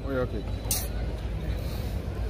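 A man's voice trails off on the end of a word just after the start, leaving a pause filled by a steady low rumble, with one short hiss a little under a second in.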